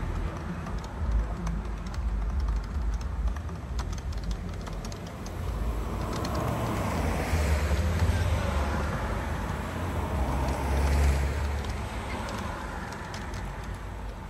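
Road traffic passing, one vehicle swelling up and fading away in the second half, over a low rumble, with light clicks of keyboard typing in the first half.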